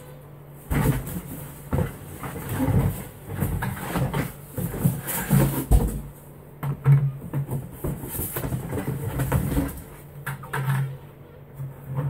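Cardboard box being handled and a white six-gallon plastic bucket lifted out of it: irregular knocks, scrapes and cardboard rustling, over a steady low hum.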